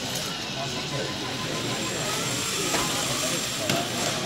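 Whine of small electric drive motors on FIRST Tech Challenge competition robots as they drive across the field, over steady crowd chatter, with a couple of light knocks in the last second and a half.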